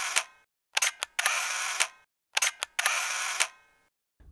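Camera shutter sound effect: a few sharp clicks followed by a short rush of noise, repeated about a second and a half apart, with dead silence between the shots.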